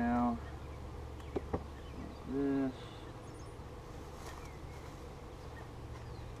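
Honeybees buzzing close past the microphone in two brief passes, one at the start and another about two and a half seconds in. Two light knocks come between them.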